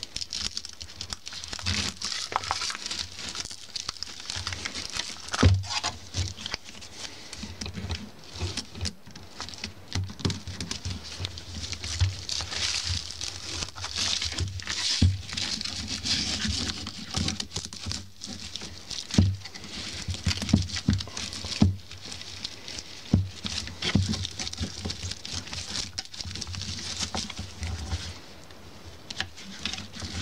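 Stiff broom bristles rustling and crackling under gloved hands as copper wire is threaded through them and pulled tight, with many small irregular clicks and a few louder knocks.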